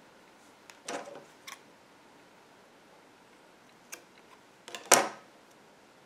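Scissors snipping off yarn ends: a few light clicks and handling noises, then one sharper snip about five seconds in.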